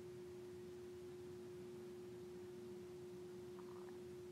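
Faint, steady single-pitched hum over quiet room tone, holding one note without change.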